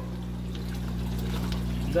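Water pouring from an aquaponics bell siphon's outlet pipe into the fish tank, growing louder as the siphon runs, the sign that the siphon has started and the grow bed is draining. A steady low hum sits underneath.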